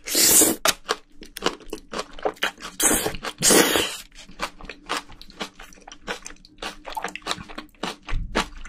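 Close-miked eating of bean sprouts from a spicy braised seafood dish: the mouthful is slurped in at the start, then chewed with many short crisp crunches, with another loud slurp about three seconds in.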